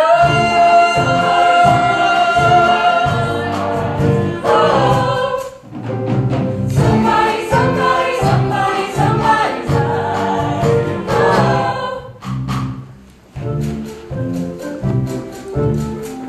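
Three female voices singing together over an accompaniment with a steady low pulse, with a long held note at the start. The singing stops about twelve seconds in and the accompaniment carries on.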